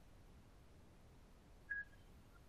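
Near silence: faint room tone, broken near the end by one brief high beep.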